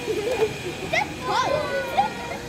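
Children's voices: several high young voices talking and calling out over one another, with a sharp rising call about a second in.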